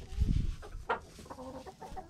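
Hens clucking softly in a series of short calls, with one sharper, higher call about a second in and some low bumps at the start.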